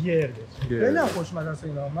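Men talking: conversational speech only.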